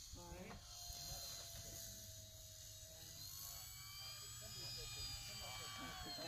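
Faint whine of an RC model airplane's motor and propeller on the runway, rising in pitch a few seconds in as the throttle comes up.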